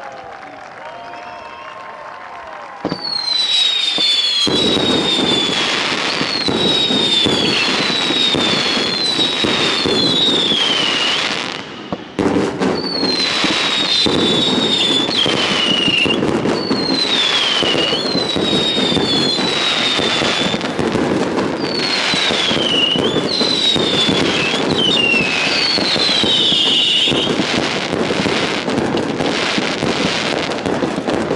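Fireworks display: after a quieter first few seconds, dense crackling and bangs set in, laced with repeated high whistles that fall in pitch. There is a brief break a little before the middle, then the crackling and whistles carry on.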